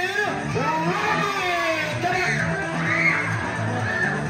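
Upbeat background music with a steady bass line, with children's high voices shouting and calling excitedly over it.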